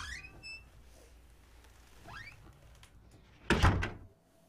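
A wooden interior door bangs loudly near the end, a short cluster of thuds, after a faint rising squeak about two seconds in.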